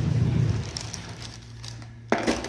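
Crinkling of a plastic bag as a hand handles blue crabs inside it. The crinkling dies away about halfway through, leaving a faint steady hum.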